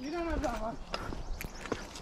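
Footsteps on a dirt and rock forest trail: a few scattered steps in the second half, after a faint voice in the first second.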